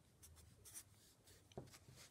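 Faint scratching of a Sharpie felt-tip marker writing on paper: a few short pen strokes.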